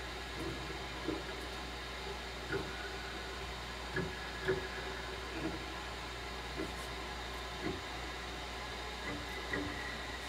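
Steady low hiss and hum of room noise, with faint scattered soft sounds every second or so.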